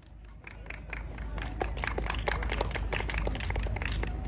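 Audience applauding: clapping starts faintly and builds over the first second or two into steady, dense applause.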